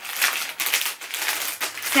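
Clear plastic packaging crinkling in irregular bursts as it is handled, while a sealed colour-in pencil case is drawn out.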